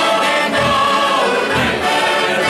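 Mixed choir of men's and women's voices singing a folk song together, accompanied by accordions.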